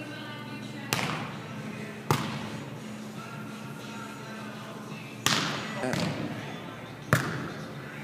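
Four sharp slaps of hands striking a volleyball during passing, setting and hitting, each echoing through a large indoor hall, over a steady low hum and faint voices.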